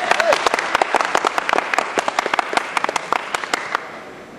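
Audience applause, many hands clapping, thinning out to scattered claps and dying away just before the end.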